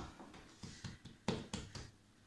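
Hands patting and pressing a folded slab of laminated pastry dough on a wooden table: a few soft, short taps and knocks, the clearest a little over a second in.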